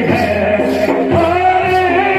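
Loud Rajasthani folk music for the Gindar stick dance: men's voices singing over a steady low drone, with regular percussive beats marking the rhythm.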